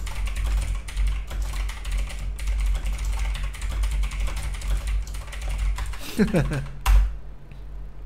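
Fast typing on a computer keyboard, a steady stream of key clicks that stops about six seconds in, followed by a single louder knock.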